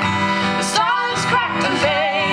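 Live acoustic song: an acoustic guitar strummed under a voice singing a melody with sliding pitch.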